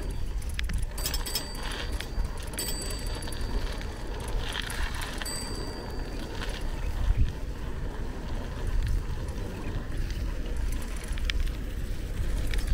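A bicycle ridden on an asphalt road: steady tyre and road rumble with wind on the microphone. A few brief high tones come in about a second in, again near two and a half seconds, and once more around five seconds.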